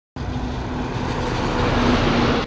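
Small motorbike engine running with road and wind noise as it rides up, a steady low hum that grows slightly louder. It starts abruptly after a brief silence at the very start.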